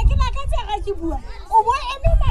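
A woman speaking loudly into a handheld microphone, her voice rising in pitch near the end, with a low rumble underneath.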